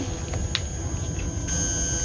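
Starship-bridge sound effects: a steady low electronic hum under sustained high electronic tones, with a brighter tone coming in about one and a half seconds in, as from a targeting display locking on. A couple of faint clicks come near the start.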